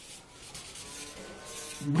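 Marker pen writing on chart paper, a run of rubbing strokes as a word is lettered.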